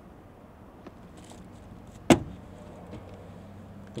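Faint steady background noise with a single sharp click about halfway through, and a few fainter ticks.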